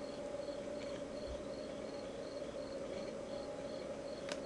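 Quiet room tone: a steady low hum with faint, evenly spaced high chirps, about three a second.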